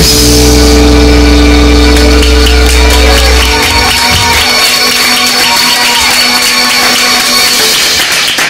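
A live blues band's final chord: electric guitars, bass and keyboard hold one loud sustained chord. The deep bass stops about three and a half seconds in and the rest of the chord rings on more softly, under audience applause.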